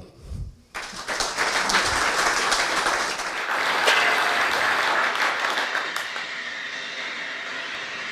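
Audience applauding, starting just after the talk ends, then dying down toward the end.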